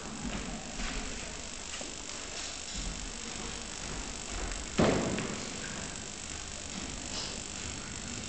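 Quiet room noise of a large hall with one sharp thump about five seconds in, fading out quickly.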